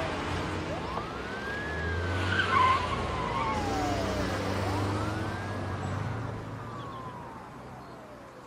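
Police car siren wailing in two slow rise-and-fall cycles over the low running of a car driving off; the sound grows fainter toward the end.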